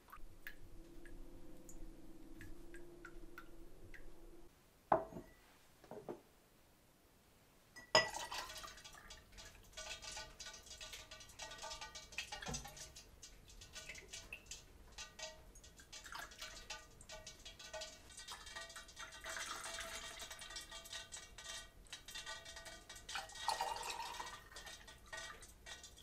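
Hot rendered lard trickling and dripping through a cloth strainer into a bowl, with a couple of short knocks about five seconds in. From about eight seconds, quiet background music with a steady beat takes over.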